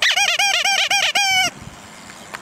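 A rubber turtle squeeze toy, fitted to a bike handlebar as a horn, squeezed by hand: a quick run of about seven high squeaks, then one longer squeak that stops about a second and a half in.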